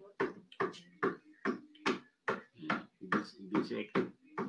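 A person's voice repeating one short, clipped syllable over and over in an even rhythm, about two or three times a second.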